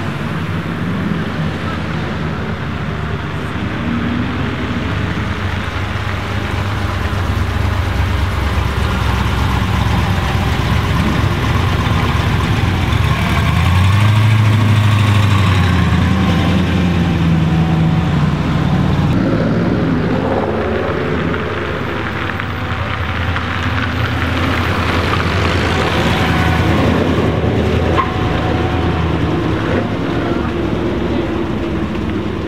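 1947 Tatra 87's rear-mounted air-cooled V8 running as the car drives along the road. The engine note swells and its pitch rises and falls near the middle, where it is loudest.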